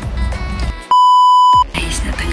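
Background music with a steady beat, cut about a second in by a single loud, pure electronic beep lasting under a second, with all other sound silenced behind it, before the music picks up again.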